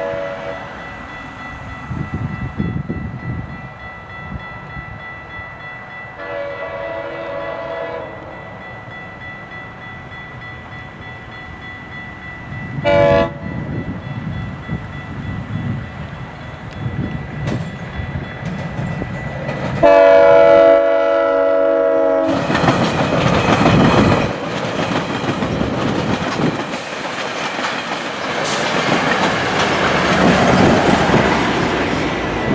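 GO Transit commuter train sounding its horn for the grade crossing in the long-long-short-long pattern: a long blast, a short one, then a final long and loudest blast. The diesel locomotive and bilevel coaches then rumble past close by, with wheels clicking over the rail joints.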